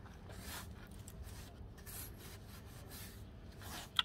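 Plastic-bristle push broom scrubbing across basalt stone steps in a few strokes, brushing off the residue left from laying before it dries, with a sharp knock near the end.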